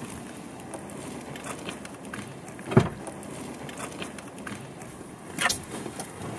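Steady low noise of a car's cabin, with one sharp thump a little under three seconds in and a shorter knock about five and a half seconds in.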